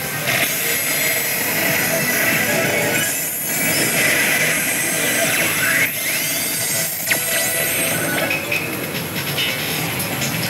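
Oshi! Bancho 3 pachislot machine playing its music and sound effects as the reels stop and a Bancho Bonus is awarded, with sweeping effect tones about six seconds in. Under it is the steady din of a busy pachinko hall.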